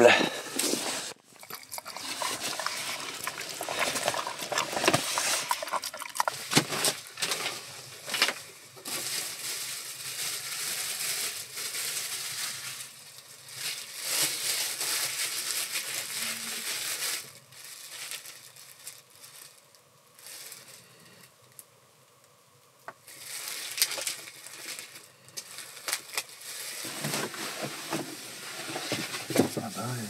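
A plastic bag crinkling and rustling in irregular spells, with small clicks and knocks, as food is handled. It goes quiet for several seconds past the middle and picks up again near the end.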